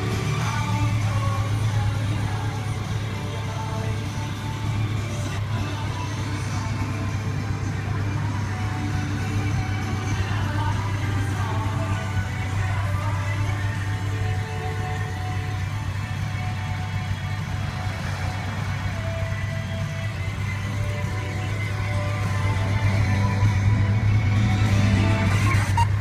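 Pop music playing on a radio over a steady low hum.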